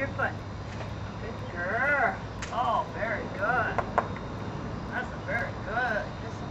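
A high-pitched voice making several short sounds that rise and fall in pitch, with a few sharp clicks in between.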